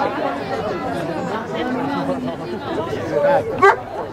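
Several people talking at once: spectators' chatter at the touchline, overlapping voices with no single clear speaker, and a short louder call near the end.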